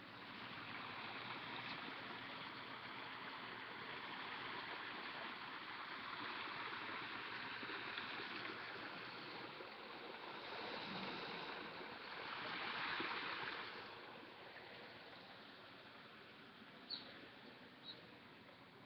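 A steady outdoor rushing hiss, like running water, that swells and fades and is loudest about two-thirds of the way through. Two short high chirps come near the end.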